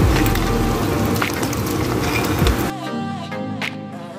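Background music over butter sizzling and crackling in a frying pan. The sizzling stops suddenly about two-thirds of the way through, leaving only the music.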